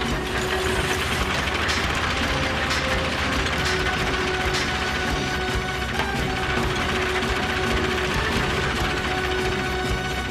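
Animated-cartoon sound effect of heavy military vehicles on the move: a continuous loud mechanical clatter with a steady hum under it.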